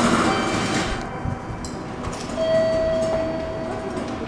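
Railway station concourse noise with a rush of sound in the first second, then a steady high tone held for about a second and a half from just past halfway.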